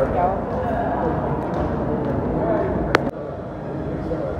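Indistinct voices of people talking in a restaurant, with one sharp click just under three seconds in, after which the background sounds a little quieter.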